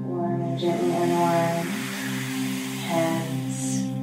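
Soft background music: a steady held drone with a slow melody in phrases over it.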